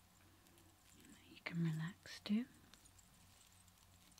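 A woman's soft, close-miked voice: two brief voiced sounds about one and a half and a little over two seconds in, the second rising in pitch, with quiet room tone between.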